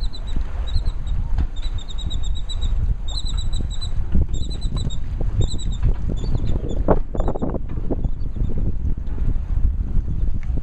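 Steady low rumble of wind buffeting the microphone. Over it, a bird calls in short runs of high chirps about once a second, stopping about three-quarters of the way through.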